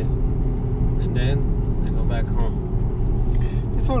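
Steady low drone of a car in motion, engine and road noise heard from inside the cabin.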